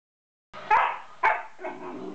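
A black-and-white collie barking in play: two sharp barks about half a second apart, then a weaker third.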